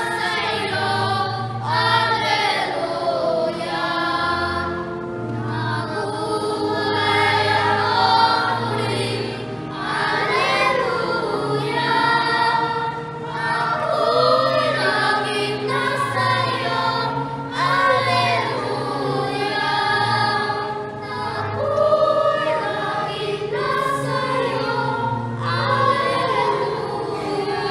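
Children's voices singing a hymn together with musical accompaniment, continuous throughout.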